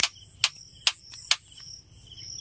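Insects chirping steadily at a high pitch, with sharp clicks a little more than two a second that stop past the middle.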